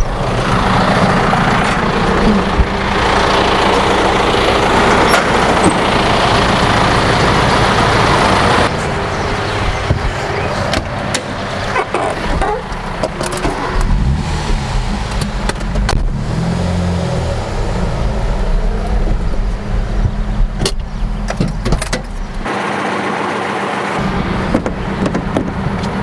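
Vehicle engines running close by: first a John Deere tractor's engine, then a small old car's engine, its revs rising and falling briefly about halfway through.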